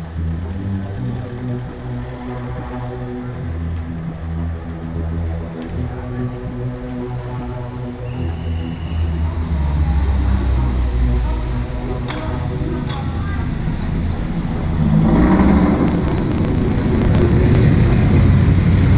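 Vintage prewar car engines running, growing clearly louder from about three-quarters of the way through as an open two-seater drives up close. Background music plays underneath.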